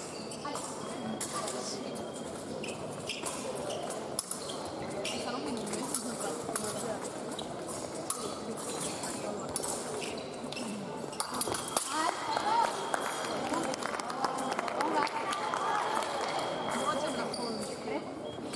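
Women's épée bout: sharp clicks of steel blades meeting and fencers' footsteps on the piste, over voices in the hall. About twelve seconds in, when a touch is scored, a steady electronic tone sounds for several seconds as voices get louder.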